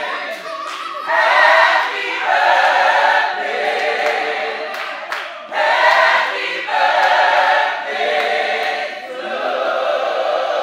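A crowd of guests singing a birthday song together, unaccompanied, in held phrases with short breaks between them.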